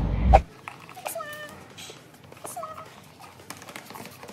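Cardboard album packaging being handled and opened: light taps and rustles, with two short high-pitched calls about one and two and a half seconds in. It opens with the tail of a loud, noisy sound that cuts off half a second in.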